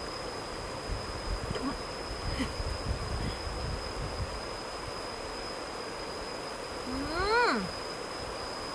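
A woman's long 'mmm' of enjoyment while eating, rising and then falling in pitch, about seven seconds in, over the steady rush of a shallow stream.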